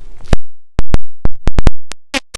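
A rapid, uneven run of about nine short, loud digital clicks separated by dead silence: an audio glitch from an edit cut.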